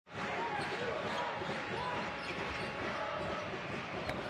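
Live sound of an indoor basketball game: a ball bouncing on the hardwood court over steady crowd noise and background voices in a large hall.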